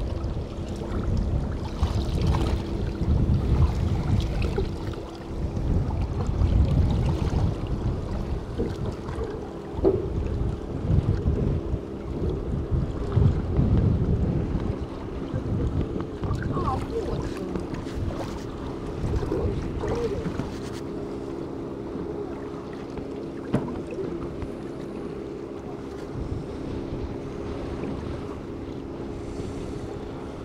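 Wind buffeting the microphone and choppy sea water washing around a boat under way, over a steady low drone from the boat's motor. The gusts are strongest in the first half and ease off later.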